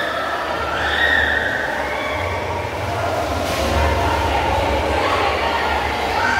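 Water sloshing and splashing as people wade waist-deep through a flooded tiled temple passage, with a steady low rumble of moving water. Indistinct voices carry over it.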